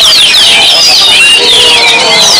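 Oriental magpie-robins (kacer) singing: a loud, dense stream of rapid, overlapping whistles and chattering trills from several birds at once.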